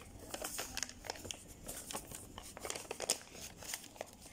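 A sheet of coloured paper rustling and crinkling as hands fold and press it into pleats, a run of short, irregular crackles.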